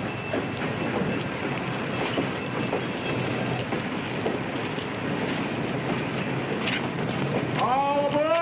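Steady rumble and hiss of a passenger train standing at a station platform, with scattered faint knocks and clatter.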